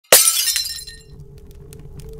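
A sudden crash of breaking glass, ringing and fading over about a second, followed by a few faint scattered tinkles.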